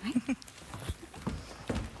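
Several people walking in heeled shoes and boots across a wooden floor: irregular footsteps knocking, a few to the second. A short vocal sound comes just at the start.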